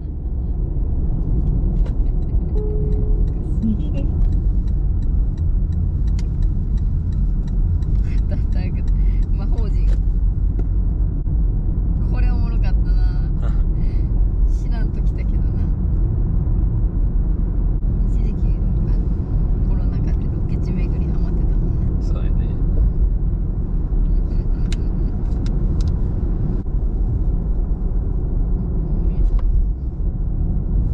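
Car driving on an ordinary road, heard from inside the cabin: a steady low rumble of engine and tyre noise, with faint talk from the occupants now and then.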